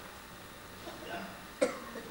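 A single short cough about one and a half seconds in, after a quiet pause.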